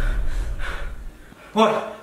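Low dramatic score fading out, and a man's sharp gasp of breath about half a second in, as if jolted out of a vision.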